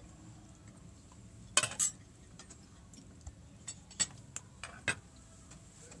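Scattered clinks and taps of cutlery and dishes at a dining table: a short louder clatter about a second and a half in, then several sharp clicks a fraction of a second apart.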